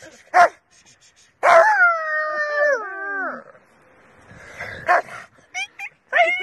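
A dog howling: a short call, then one long howl of about two seconds that falls steadily in pitch, followed by a few short calls near the end.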